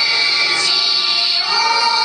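Voices singing a slow melody with musical accompaniment, each note held long: the anthem that goes with the raising of the flag.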